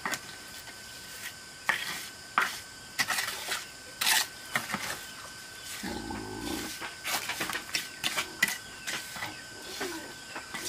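Steel trowel scraping and tapping wet cement mortar onto concrete hollow blocks: irregular short scrapes and taps, with a faint steady high tone behind them and a brief low sound about six seconds in.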